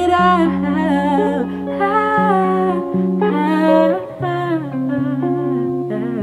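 Live acoustic music: a woman singing wordless vocal runs, with the melody sliding up and down, over held acoustic guitar notes.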